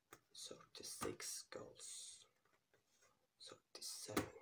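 Faint, close whispering in several short hissy bursts.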